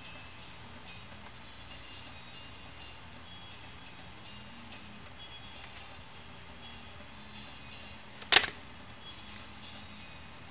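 Faint background music at low level, with a single sharp click a little past eight seconds in.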